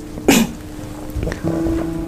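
A brief breathy vocal sound from a man, a short falling 'hah' like a quick laugh or exhale, over a steady held background music tone.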